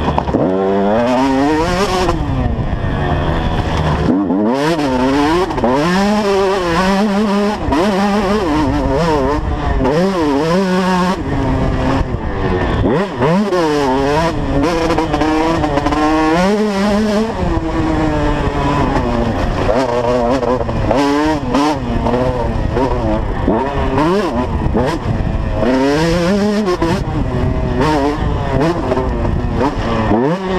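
KTM 150 SX two-stroke motocross engine under hard riding, revving up and falling back over and over as the rider shifts and rolls on and off the throttle. Wind rushes over the helmet-camera microphone.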